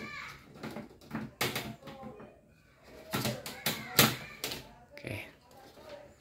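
Metal clicks and knocks from a cooker hood's carbon filter panel in its metal frame being slid back into the hood and pushed into place, about a dozen sharp clacks spread irregularly over a few seconds.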